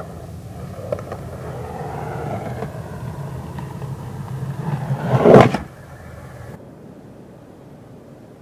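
A low rumble that slowly builds and swells into a loud rushing peak a little past five seconds in, then drops away quickly to a faint noise.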